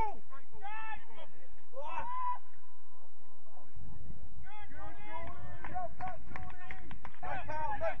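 Men shouting and calling across a grass football pitch during play, with a low rumble coming in a little before halfway.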